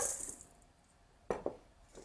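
Crushed cookie crumbs tipped from a ceramic bowl into a stainless steel mixing bowl: a brief hissing rattle that fades within half a second. About a second later comes a short knock, as of a bowl set down on a wooden board.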